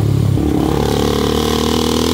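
Honda CB300's single-cylinder engine running under way with wind rush on the microphone; about half a second in the engine note changes and then climbs slightly as the bike accelerates.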